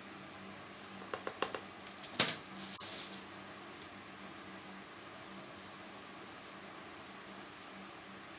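Gloved fingers pressing and working loose potting soil around succulent cuttings in a small plastic pot. There are a few short rustles and scratches in the first three seconds, then only a faint steady hum.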